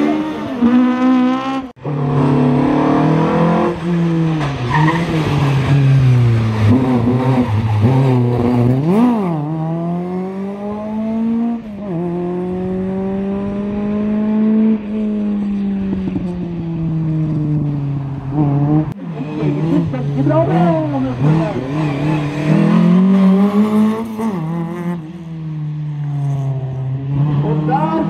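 Rally car engines revving hard, pitch climbing and dropping again and again through gear changes as the cars are driven through the stage, one car after another, with tyre squeal. The sound breaks off abruptly twice where one car's run gives way to the next.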